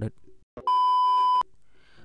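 A single steady electronic beep, under a second long, at one even high pitch, switching on and off abruptly.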